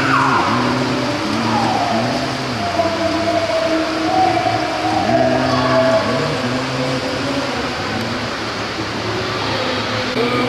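A group of voices singing a slow song with long held notes that step from pitch to pitch, with no speech over it.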